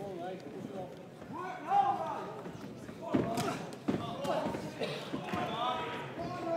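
Shouting voices of the crowd and corners in a boxing hall, with a few sharp thuds of boxing gloves landing, the clearest about three and four seconds in.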